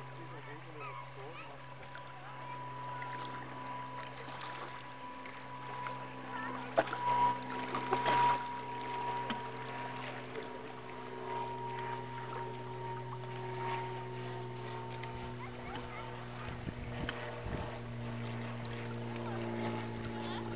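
A steady motor hum with a faint whine that sinks slowly in pitch. A few sharp knocks come about seven to eight seconds in.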